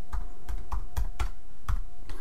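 Typing on a computer keyboard: about eight separate keystrokes in two seconds, at an uneven pace.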